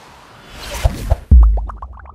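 A news channel's short musical logo sting: a rising whoosh, then a loud deep bass hit followed by a quick run of short bright notes.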